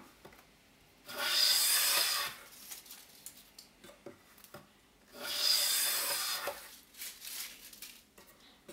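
Japanese hand plane (kanna) pulled twice along a wooden board, each stroke a long hiss of just over a second as the blade shaves off a ribbon of wood. Light knocks come between the strokes as the plane is set back down on the board.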